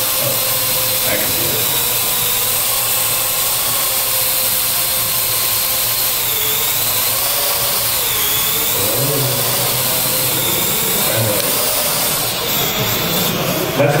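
Parrot AR.Drone quadcopter hovering: a steady whine from its four electric rotors, its pitch wavering up and down as it manoeuvres. Near the end the sound thins out as it comes down.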